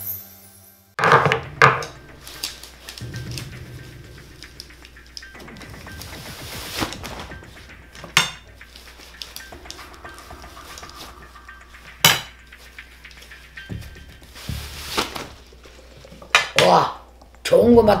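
Obanggi divination flags being handled and drawn: the wooden flag sticks knock and clack against each other and the table in scattered single strikes, with the cloth of the flags rustling in between.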